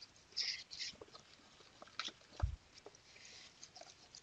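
Metal spoon stirring thick, porridge-like filling plaster in a bowl: short scrapes through the mix, a few light clicks of the spoon against the bowl, and one soft low knock a little past halfway.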